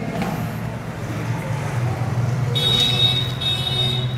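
Marker squeaking on a whiteboard in two short high-pitched strokes near the end, over a steady low background hum.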